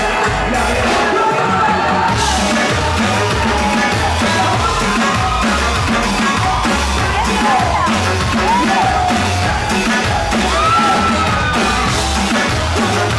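Live band playing loud amplified music with a steady drum beat, electric guitar and bass. A vocalist's voice and crowd yells ride on top, with a few sliding vocal calls in the second half.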